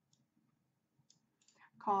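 A few faint computer mouse clicks, made while selecting text and opening a right-click menu.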